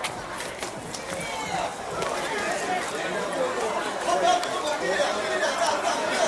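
Indistinct chatter of several people talking at once, growing louder about two seconds in.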